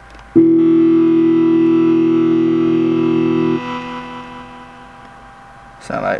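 A synthesizer sound from the iMaschine 2 beat-making app on an iPhone, auditioned as one held note about half a second in. It is held for about three seconds, cuts off, and leaves a long tail fading away, with the app's effects switched on.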